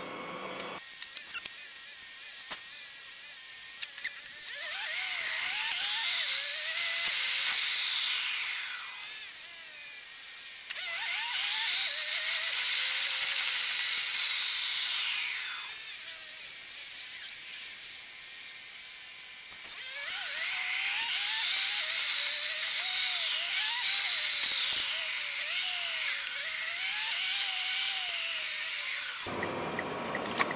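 Car engine and road noise heard inside the cabin, played back fast-forward so it is pitched up into a high, drill-like whine. Three times the pitch rises and falls as the car speeds up and slows between lights. A couple of sharp clicks come in the first few seconds.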